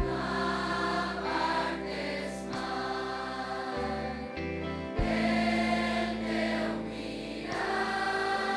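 A massed choir of teenage students sings a song in Catalan over instrumental accompaniment with a steady bass line. There are strong accented entries at the start and again about five seconds in.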